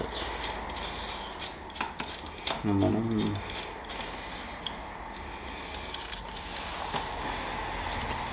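Scattered light metallic clicks, knocks and scraping as a bicycle-trailer hitch is fitted and tightened onto a bicycle's rear frame by hand.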